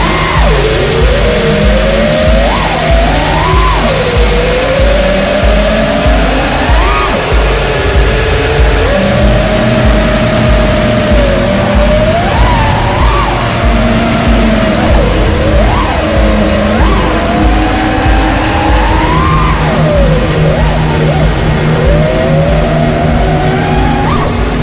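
Brushless motors and propellers of a 5-inch FPV freestyle quadcopter, heard from its onboard camera, whining with a pitch that sweeps up and down constantly as the throttle changes through flips and dives. Background music with a steady beat plays throughout.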